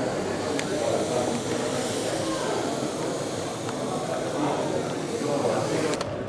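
Aquarium substrate pouring in a steady stream from a bag into a dry glass tank: a continuous hiss of falling grains, with voices murmuring in the background.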